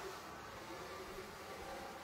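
Faint, steady whir of an HO-scale model train's electric motors running along the layout track.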